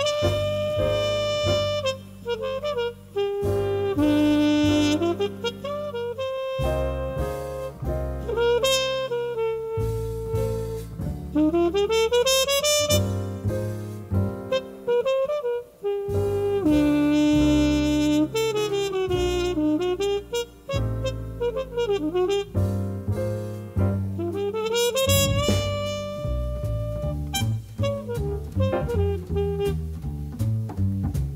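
Small jazz group playing a slow ballad: trumpet carries the melody in long held notes with rising slides between them, over piano, walking double bass and soft drums.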